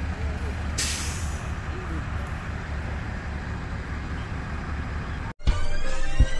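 Steady low vehicle rumble with faint voices in the background, broken about a second in by a short sharp hiss. Near the end the sound cuts out and music with a beat starts.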